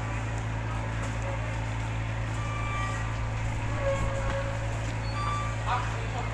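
Steady low drone of idling speedboat engines alongside the pontoon, with scattered voices of waiting passengers over it.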